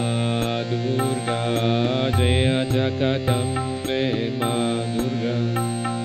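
Harmonium sounding a sustained chord under a wavering sung melody of a devotional mantra chant, with drum strikes on a steady beat.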